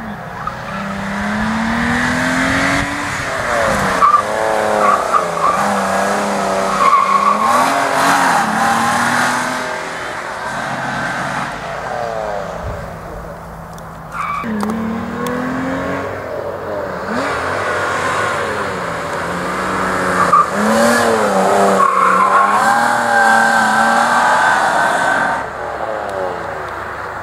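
Nissan R32 Skyline sedan driven hard in autocross: engine revving up and down through gear changes, with tyres squealing as it slides through the turns. The sound comes in two long stretches with a quieter lull between them.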